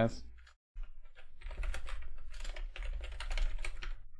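Typing on a computer keyboard: a quick, uneven run of key clicks that starts about a second in and keeps going.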